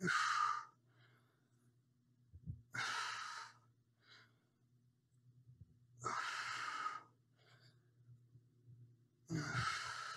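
A man breathing out hard through the mouth, four long breathy exhales about three seconds apart, in time with the reps of a one-arm dumbbell row.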